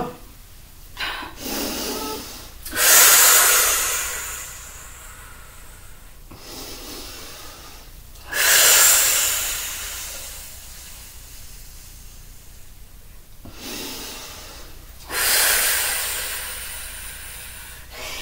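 A woman breathing deeply and audibly, paced to a slow crunch exercise. There are three loud breaths a few seconds apart, each starting sharply and trailing off, with quieter breaths in between.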